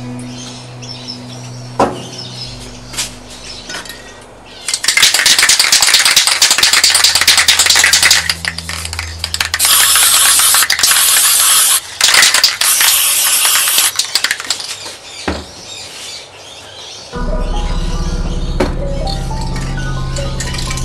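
Aerosol spray-paint can hissing in bursts: one long spray of about three seconds, then three shorter sprays close together. Background music plays underneath.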